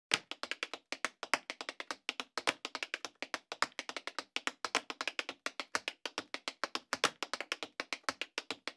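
Tap dancing: a fast, uneven run of sharp taps from tap shoes, about eight to ten a second.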